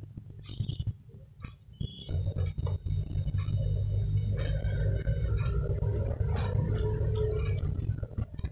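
Light clicks and scrapes of a metal spoon on a ceramic plate and bread as sauce is spread. From about two seconds in, a steady low rumble runs underneath and is the loudest sound.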